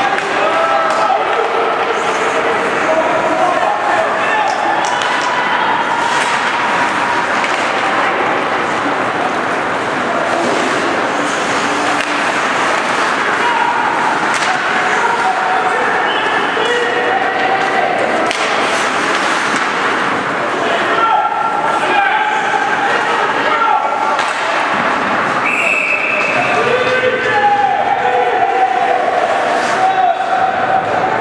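Hockey spectators shouting and calling out continuously, many voices overlapping, with occasional knocks of puck and sticks against the boards.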